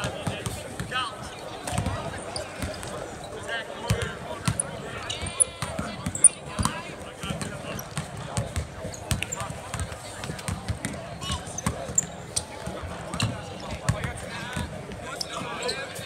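Several basketballs bouncing irregularly on a hardwood court, dribbles and rebounds overlapping in a large, mostly empty arena, with voices talking in the background.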